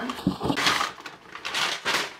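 A cardboard box being opened by hand: a short click, then two stretches of scraping, rustling cardboard as the flaps are pulled apart.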